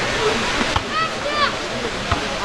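Steady hiss of rain across an open football ground, with two short, distant shouts from players about a second in and again shortly after.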